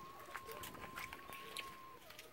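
A faint, long whistled note held steady for nearly two seconds, sinking slightly in pitch before it stops, with a few light clicks and knocks around it.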